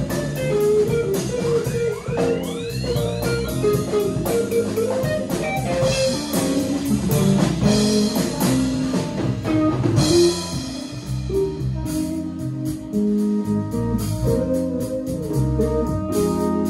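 Live band playing, led by a hollow-body electric guitar over drum kit and bass guitar, with the drums keeping a steady beat. Two quick rising sweeps come about two seconds in, and a bright accent comes about ten seconds in.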